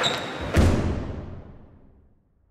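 Fencers' footwork on a studio floor: a brief sneaker squeak at the start and a heavy foot thump about half a second in, after which the sound fades steadily away.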